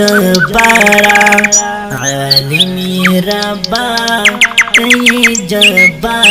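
Wordless interlude of a Pashto hamd: sustained backing notes that step from pitch to pitch without words, overlaid with bird-chirp sound effects. There is a fast trill about a second in and a run of about seven quick falling chirps between four and five seconds.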